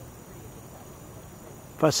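Faint, steady chirping of night insects in the evening air. A man's voice starts just before the end.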